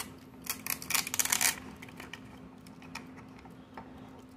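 A small capsule's printed wrapper being peeled off by hand, crinkling, with a dense run of crackles in the first second and a half and scattered fainter ones after. A steady low hum runs underneath.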